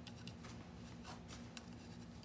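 Faint handling noise: light rubs and small scattered clicks of hands turning over a metal automatic bottle cap remover, over a faint steady hum.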